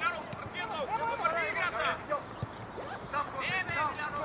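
Voices calling out across a football pitch, several raised calls in quick succession from players and coaches during play.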